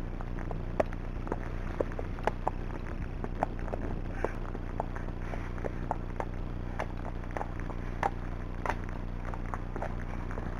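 A horse walking on a grass and dirt track, with irregular sharp clicks from hooves and tack, about two a second, over a steady low hum.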